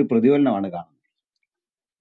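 A man's voice speaking for under a second, then cutting off abruptly into dead silence for the rest.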